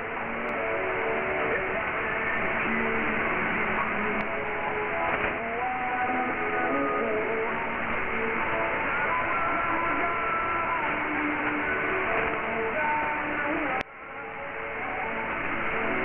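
Weak shortwave broadcast of Radio Madagasikara on 5010 kHz, received in upper sideband: music with held notes that step from pitch to pitch, barely above a steady hiss of static, with no treble. Near the end the signal drops out suddenly and then swells back up.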